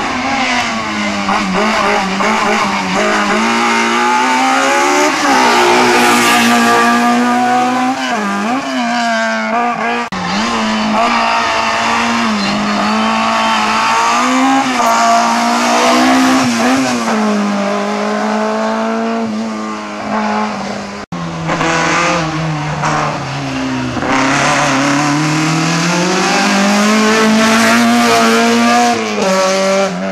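Small racing hatchbacks' engines revving hard and dropping back over and over as they accelerate and brake through a cone slalom, one car after another, with sudden changes where the footage cuts about a third of the way in and again about two-thirds of the way in.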